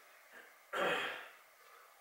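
A man clearing his throat once, sharply, a little under a second in.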